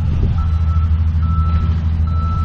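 A vehicle's reversing alarm beeping, a single high tone in half-second beeps a little over once a second, over a loud steady low rumble.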